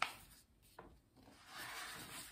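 Paper pages of a large picture book being turned by hand: a sharp rustle as the page flips, then softer paper rubbing and rustling as the spread is settled.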